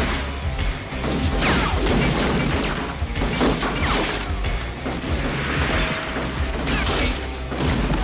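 Action-film soundtrack: score music over repeated crashes and impacts as gunfire tears up a room.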